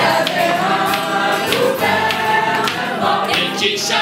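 Mixed community choir singing live in French, men's and women's voices together.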